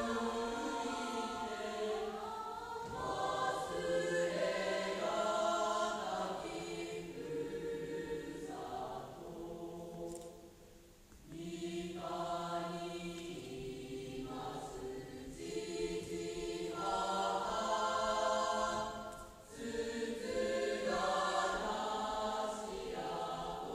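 A choir singing a slow song in long held phrases, with a short pause about halfway through and another later on.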